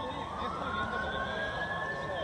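A siren wailing, its pitch climbing slowly over the two seconds, above a steady higher-pitched tone.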